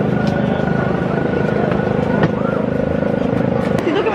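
An engine running steadily with an even low pulsing, a faint voice or two underneath and a single click about two seconds in.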